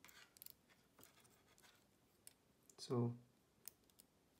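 Lego plastic pieces clicking faintly as hinged panels on a brick-built robot figure are moved by hand: a quick run of small clicks at the start, a few scattered ones, and a sharper click near the end.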